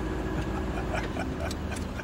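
Car engine idling with a steady low rumble on a film soundtrack, with a few faint ticks.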